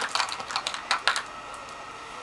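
Makeup brushes and small hard cases clicking and clattering as they are handled, a quick run of sharp clicks that stops a little over a second in.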